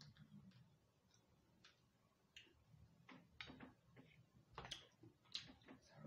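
Faint eating sounds of chicken being chewed and picked apart by hand: scattered soft clicks and smacks, sparse at first and coming closer together and louder about halfway through.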